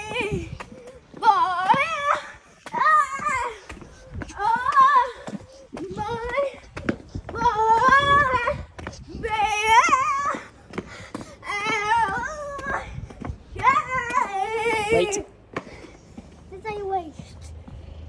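A child's voice making long, high, wavering wordless calls, about one every one and a half to two seconds, with fainter, shorter ones near the end.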